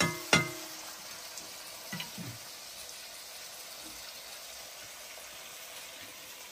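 Diced potatoes frying in oil in a steel kadai, a steady sizzle, with a sharp knock of the stirring spoon against the pan near the start.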